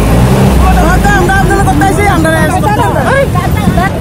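Voices speaking at the roadside over a low, steady rumble of road traffic.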